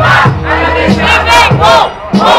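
Crowd of rap-battle spectators shouting and yelling together in loud, repeated cries.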